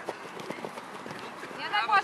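Children's football players running on a grass pitch: scattered quick footfalls and light touches of the ball being dribbled, heard as short irregular knocks. A man's voice starts calling out near the end.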